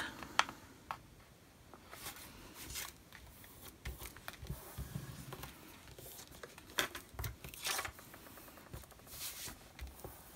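Card stock and a laminated panel being handled on a cutting mat: faint rustles, scrapes and taps as the card is turned, slid and pressed down by hand, in several short bursts.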